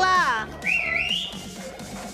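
A voice calls out with a falling cry, then a person whistles briefly: one short high whistle that rises and wavers, about half a second in.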